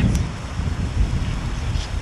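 Wind buffeting the microphone: a steady, gusty low rumble, with a brief click just after the start.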